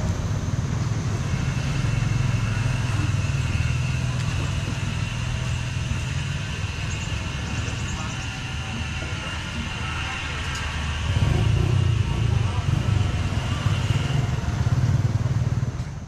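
Motorbike engine and street traffic running steadily, growing louder from about eleven seconds in.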